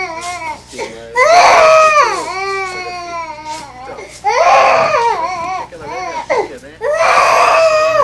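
Newborn baby crying in long, high wails, about three in a row, each falling in pitch at its end, with short catches of breath between them.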